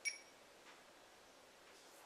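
Near silence: room tone, with one brief, light click with a short ring right at the start.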